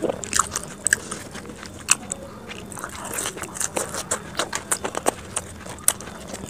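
Crisp deep-fried samosa pastry cracking and crunching, close to the microphone, as samosas are broken open and eaten. It comes as many sharp, irregular crackles, sped up to double speed.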